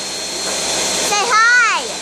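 Ninja countertop blender running steadily, crushing ice and frozen banana into a smoothie. A voice calls out over it about a second in.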